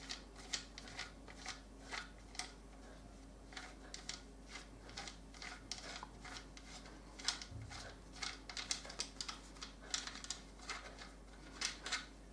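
M1 Garand gas cylinder lock being unscrewed by hand from the barrel: a run of faint, irregular metallic clicks and ticks as the threaded steel parts turn against each other.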